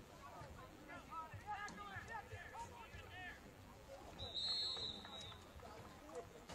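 Voices calling and shouting across a football field, then a referee's whistle blown once about four seconds in, a single steady high blast lasting under a second and the loudest sound here.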